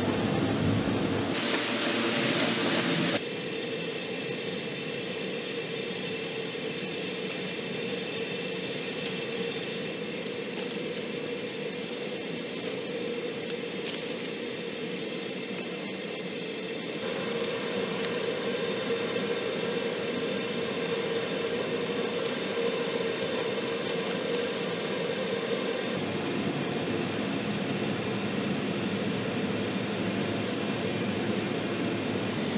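A steady mechanical roar with a constant hum running through it. It turns louder and hissier from about a second and a half in to about three seconds in, drops back, then grows somewhat louder again a little past the middle.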